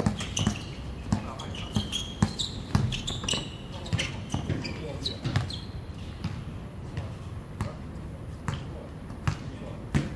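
Basketball bouncing on a hard outdoor court, dribbled in a run of sharp bounces about twice a second over the first few seconds, then more sparsely, with players' voices calling out.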